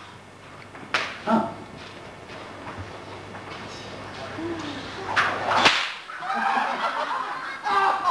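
Whip cracking: one sharp crack about a second in, then two more in quick succession around five seconds in.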